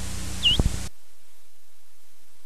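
Low electrical hum with a brief high chirp about half a second in, cut off a little under a second in and replaced by a steady hiss of static: the recorded programme has ended.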